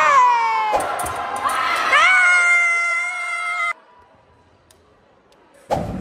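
Two loud shouts from fencers during epee bouts. The first is short, rising and falling in pitch; the second swoops up and is held as a long yell before it cuts off abruptly about four seconds in.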